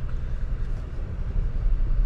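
A car moving slowly, heard from inside the cabin: a steady low hum of engine and road noise.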